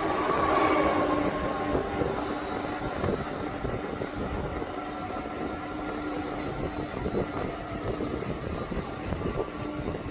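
Steady road and traffic noise from riding a bicycle along a bridge roadway, with uneven rumble and a faint steady hum; a little louder in the first second or two.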